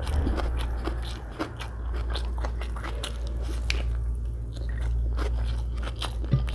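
Close-miked chewing of egg biryani rice and boiled egg, with many wet mouth clicks and smacks. Fingers squish and gather the rice on a glass plate.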